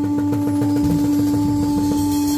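Live band music: a single note held steady over a low, quick pulsing beat.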